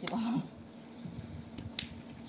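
Stroller harness buckle clicking as it is fastened: a sharp click at the start and a louder one near the end. A brief voice sounds just after the first click.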